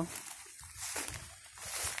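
Rustling of long wet grass and footsteps as a person moves through it, with two brighter swishes, one about a second in and one near the end.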